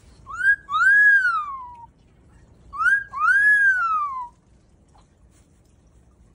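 Moluccan cockatoo whistling the same two-note phrase twice, about two and a half seconds apart. Each phrase is a short upward note followed by a longer note that rises and then slides down.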